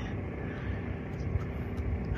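A steady low rumble of background noise with no distinct event, broken only by a few faint ticks.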